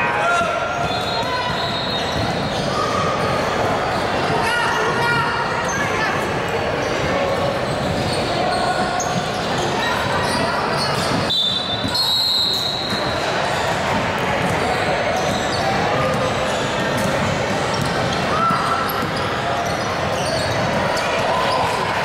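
A basketball bouncing on a hardwood gym floor during play, with players' voices and calls echoing in a large hall.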